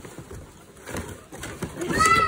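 Cardboard shoe boxes being handled in a shipping carton: faint, uneven scuffing and rustling of cardboard. Near the end a voice starts an exclamation.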